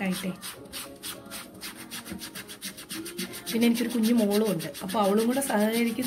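A toothbrush scrubbing a cleaning paste into wet cotton cloth in quick, even back-and-forth strokes, several a second. A person's voice joins in from about halfway through.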